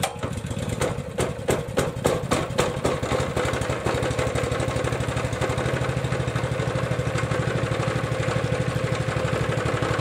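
An engine running: uneven, surging pulses for the first few seconds, then settling into a steady, even idle.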